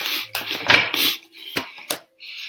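Tarot cards being shuffled and handled: several short, papery riffling and slapping bursts.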